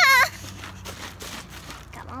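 A young girl's short, loud, high-pitched shout, lasting about a quarter of a second right at the start, followed by faint background noise.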